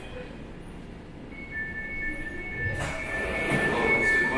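Platform screen doors and the train's doors opening at an Elizabeth line underground platform. Two steady high alert tones start about a second and a half in, and a rush of sliding-door noise rises near the end, over the low rumble of the train standing at the platform.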